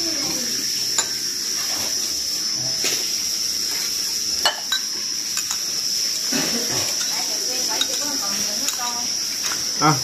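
A spoon clinking and scraping against small ceramic bowls as a blood-and-water mixture is stirred and spooned out, giving scattered sharp ticks. Behind it runs a steady high chirring of crickets.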